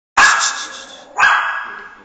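Small dog barking twice, about a second apart, each bark starting sharply and trailing off.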